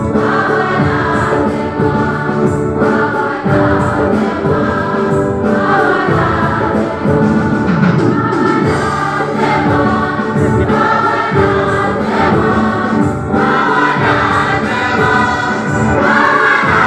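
A choir singing a hymn with instrumental accompaniment.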